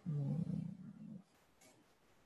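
A person's drawn-out wordless vocal sound, rising in pitch at first and then held for about a second before it stops.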